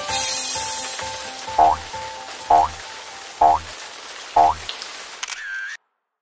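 Cartoon rain sound effect, a steady hiss that slowly fades, under the last held notes of a children's song. Four short pitched hits land about a second apart, then the sound cuts off to silence near the end.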